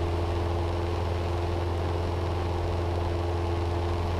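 Cessna 172's piston engine and propeller droning steadily in cruise, a constant low hum with a few faint steady tones above it.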